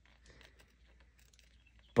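Near silence with a few faint light scratches and ticks: a hobby knife blade tracing masking tape along a panel line on a plastic model car body.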